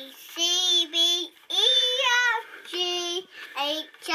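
A young boy singing in a high voice: a handful of drawn-out notes with short breaks between them, one sliding up and then down in pitch.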